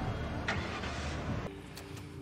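Steady motor-vehicle noise in a TV episode's soundtrack, with a short click about half a second in. The noise cuts off abruptly about one and a half seconds in.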